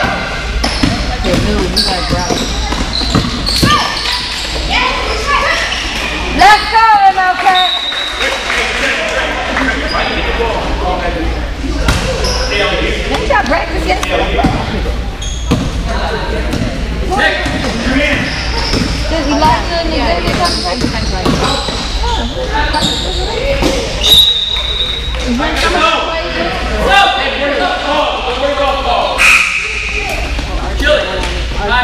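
Basketball bouncing on a gym floor as players dribble up the court, with sneaker sounds and voices echoing in a large hall. A couple of brief high squeaks come through about a third of the way in and again about four-fifths of the way in.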